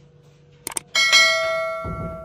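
Subscribe-button sound effect: two quick clicks, then a bright bell ding that rings out and fades over about a second.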